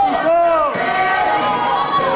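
Latin dance music playing, with one loud voice call that rises and falls in pitch about half a second in.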